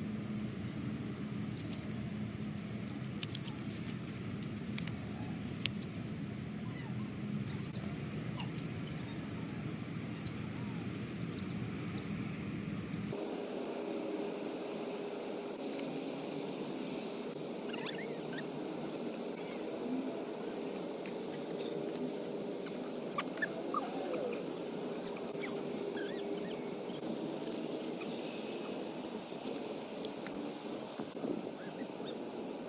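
Outdoor background ambience: birds chirping, with children playing in the distance. The background changes abruptly about halfway through.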